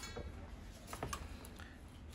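A few faint small ticks of a dulcimer string being handled and pushed through a tuner post in the scrollhead pegbox.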